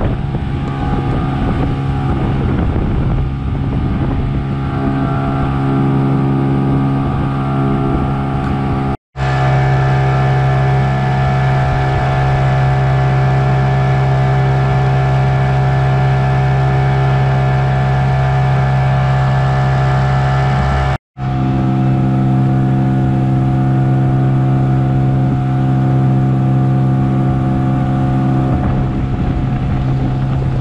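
Outboard motor running steadily at speed, pushing an inflatable boat through the water. The sound cuts out for an instant twice, about nine and twenty-one seconds in, and the engine note is a little different in each stretch.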